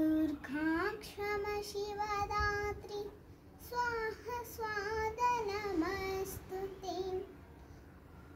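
A young girl chanting a Sanskrit stotra in a sung, melodic voice. She sings two phrases with a short breath between them, and stops shortly before the end.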